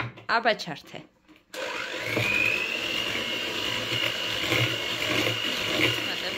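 A small electric kitchen appliance motor, a mixer or blender, switches on about one and a half seconds in. Its whine rises briefly and then runs steadily at one pitch.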